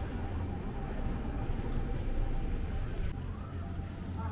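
Outdoor town-street ambience: a steady low rumble with a faint hiss and a few light clicks.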